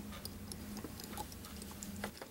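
Faint, light ticks and clicks scattered over a low, steady hum.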